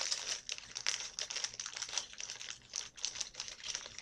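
Hair accessories being rummaged through and handled: a dense, irregular run of crinkles and small clicks, with no steady rhythm.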